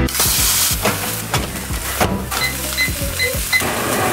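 Food sizzling in a non-stick frying pan on a stovetop, under background music with a beat. Then a microwave beeps four times, short and high.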